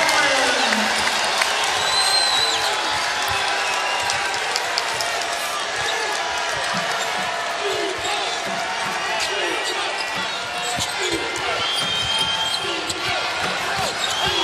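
A basketball dribbling on a hardwood court amid the steady noise of an arena crowd, with scattered shouts and a few brief high squeaks during live play.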